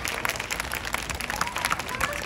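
Audience applause, many hands clapping right after a live band's song ends, with a voice heard near the end.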